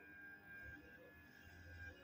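Near silence: faint room tone with a steady high-pitched tone in the background.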